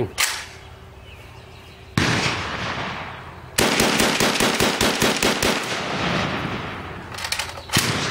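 AK-pattern rifle firing: a single shot about two seconds in, then a rapid string of about nine shots in two seconds, with the echo trailing off afterwards. A couple of small clicks follow near the end.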